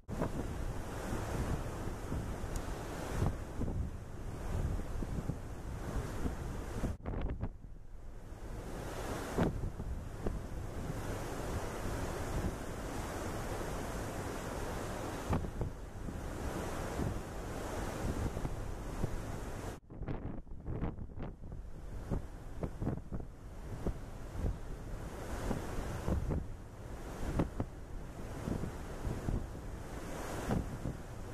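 Wind buffeting the camera microphone over a steady wash of ocean noise, gusting unevenly, with two brief sudden dips.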